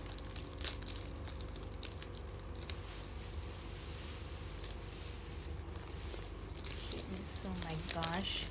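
Thin clear plastic candy-bar wrapper crinkling and tearing as a Kinder Bueno's inner packaging is unwrapped by hand, in scattered soft crackles.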